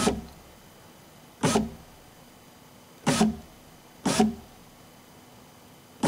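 BMW E46 power window motor run in four short bursts, each a brief whir of under half a second, jogging the door glass down in small steps.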